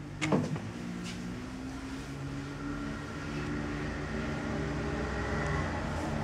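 Steady low mechanical hum of a running motor, growing slightly louder about halfway through, with a sharp knock about a quarter second in and a lighter one about a second in.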